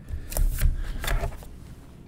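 Sticky tape and a paper index card being handled and pressed onto a Chromebook lid: several short rustles and light knocks in the first second and a half.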